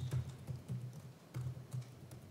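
Typing on a computer keyboard: a handful of slow, irregularly spaced keystrokes.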